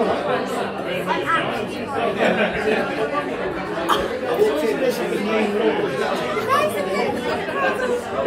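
Overlapping chatter and excited exclamations of several people reacting to a magic trick, over the hum of talk in a large room.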